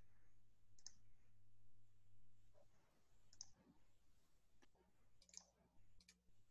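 Near silence: faint room tone with a low hum in the first half, and a few faint sharp clicks, about a second in, at three and a half seconds and near five and a half seconds.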